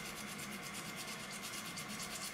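Faint, fast rubbing strokes, evenly repeated.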